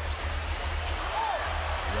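Arena game sound from a basketball broadcast: crowd noise and a low music bed, with a basketball being dribbled on the court and a brief squeak about a second in.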